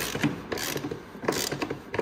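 Hand socket ratchet clicking in a few short runs as a T40 Torx bolt on a snowmobile chaincase cover is snugged down.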